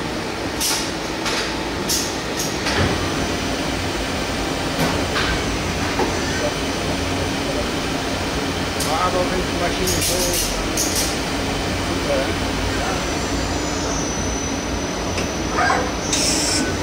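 Doosan Puma 2600 CNC lathe running: a steady machine hum, with short hisses and clicks as the tool turret moves, several near the start and a cluster about ten seconds in.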